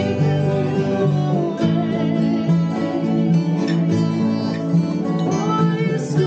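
Several acoustic guitars and other plucked strings playing together live, an instrumental introduction to a slow Irish folk ballad, at a steady level.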